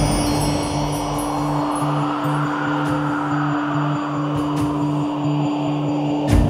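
Suspense background music: a wind-chime shimmer at the start that fades away, over a held drone and a low note pulsing about twice a second.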